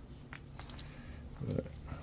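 A few faint, light clicks from a small plastic-and-metal RC rock-crawler chassis being handled on a workbench, over a steady low hum.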